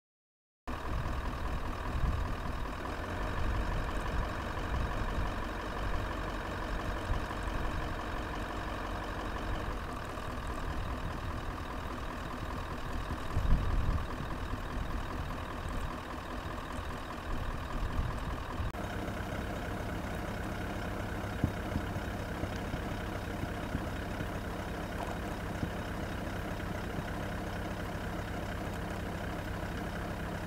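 A Toyota Land Cruiser's engine idling, cutting in abruptly just after the start. About nineteen seconds in it changes to a steadier, lower hum.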